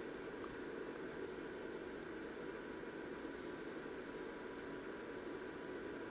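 Quiet, steady hum and hiss of room tone, with two faint ticks.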